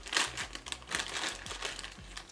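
Plastic Rainbow Drops sweet bag crinkling as it is handled at its top: a run of irregular rustles, loudest just after the start and fading toward the end.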